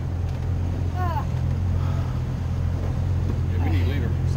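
Yamaha FSH 190 boat's engine running steadily at idle as a low, even hum.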